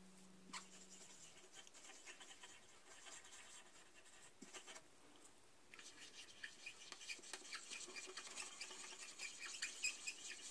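Red Sharpie marker tip scratching faintly across the hard plastic of a blow mold as it is colored in, the strokes getting busier and a little louder from about six seconds in.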